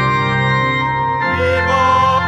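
Organ playing held chords of the Mass's entrance hymn, the bass note changing about a second in. A singer's voice comes in on a long held note near the end.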